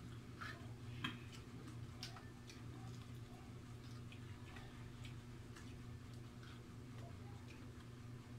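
Quiet eating sounds: irregular small clicks and smacks from chewing fried chicken feet and eating rice by hand, the sharpest about a second in, over a steady low hum.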